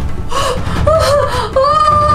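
A person's high-pitched drawn-out exclamation of surprise: a few short wavering 'ooh' sounds, then one long held 'oooh' that falls away at the end.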